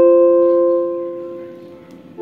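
A held chord from an instrument played through a Caline Hot Spice mini volume/wah pedal, fading out steadily over about two seconds with no change in tone.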